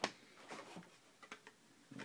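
Small objects being handled: one sharp click at the start, then a few faint ticks.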